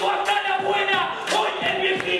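A man rapping into a microphone over a hip-hop beat, with thumps at a steady pulse and crowd noise behind.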